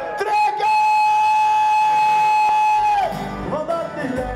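Live boerenrock band: a man sings over amplified acoustic guitar, holding one long note for about two seconds before it slides down and the song moves on.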